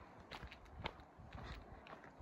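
Faint footsteps on a packed-dirt forest trail strewn with needles and duff, landing at about two steps a second in an unhurried walk.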